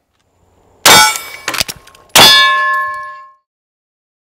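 Two loud metallic clangs about a second and a quarter apart, with a few quick clinks between them; the second clang rings on with a clear tone for about a second before fading.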